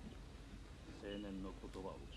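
Faint speech: a voice from the anime episode playing quietly in the background, a few words about a second in, over a low steady hum.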